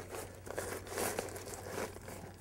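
The thin clear plastic of a kite's leading-edge bladder crinkling and rustling as it is handled by hand, with a few light clicks, over a low steady hum.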